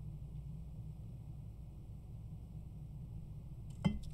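Quiet room tone: a low steady hum, with one brief click just before the end.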